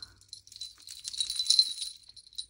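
A chunky beaded keychain jangling as it is handled: its many colourful and silvery beads and metal charms clicking and rattling against each other in quick, irregular clicks, busiest in the second half.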